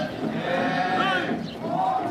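A group of men's voices chanting in long, drawn-out calls, some gliding up in pitch, typical of a Naga dance troupe's chant.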